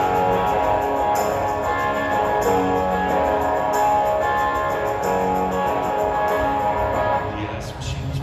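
Live band playing an instrumental passage of a rock song: electric guitar over a steady beat, with a sharp hit about every second and a quarter. The music drops off briefly near the end, then comes back in.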